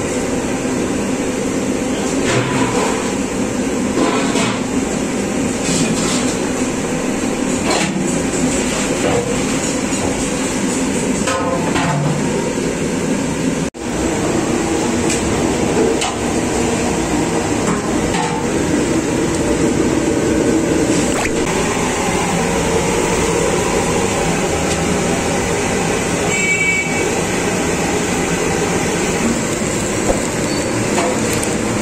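A steady rushing noise from gas stove burners under large aluminium cooking pots, with scattered clinks of metal spoons against the pots.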